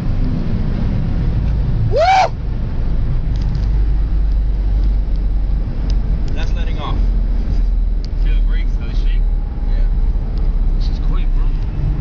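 Steady low engine and road rumble inside a car's cabin at highway speed, around 100 mph during a roll race. About two seconds in there is a rising shout, and brief voices come and go later.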